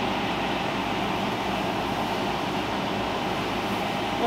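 Electric fan running steadily, an even, unbroken noise.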